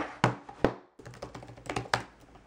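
Laptop being opened and typed on: a handful of sharp, separate clicks and taps from the lid and the keys, bunched early and again near the end.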